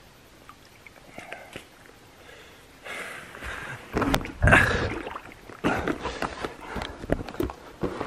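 A few seconds of faint background, then close rustling and irregular knocks as the camera is picked up and handled, loudest about four seconds in.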